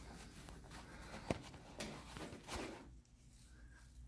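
Faint handling noise: clear plastic wrapping and foam pod air filters being handled, with a few light clicks and taps in the first half, then quieter.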